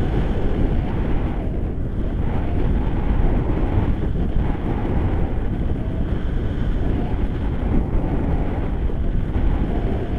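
Wind from the paraglider's airspeed buffeting the camera microphone: a steady, loud, low rush of wind noise.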